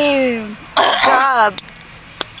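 Two wordless vocal sounds from a person: a drawn-out voice falling in pitch at the start, then a rougher sound with wavering pitch about a second in.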